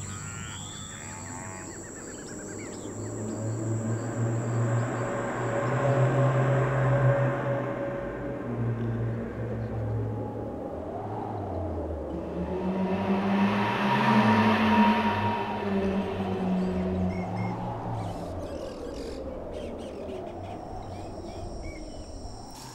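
Background music of long held low tones with slow gliding lines, swelling to its loudest about two-thirds of the way through and easing off; a thin, steady high insect chirr sits under it at the start and again near the end.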